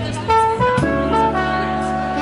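Live jazz band music: a horn section of trumpet, trombone and tenor saxophone over electric bass, keys and drums, playing a few short notes and then holding notes from about a second in.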